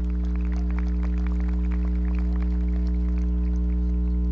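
Steady electrical mains hum on the recording. Over it, faint scattered clapping thins out and dies away about three seconds in.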